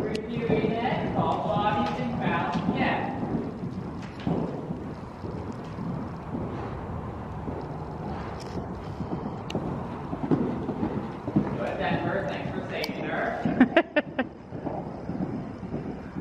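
Hoofbeats of a horse trotting and cantering on soft dirt arena footing, with indistinct voices talking at the start and again near the end.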